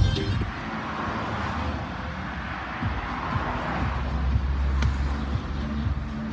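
Loud dance music with a beat cuts off at the very start, leaving steady road and vehicle noise with a low engine hum that grows stronger in the second half.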